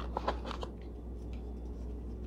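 Jewelry packaging being handled: light rustling and a few short clicks of paper and cardboard, bunched in the first half second and sparse after, over a steady low hum.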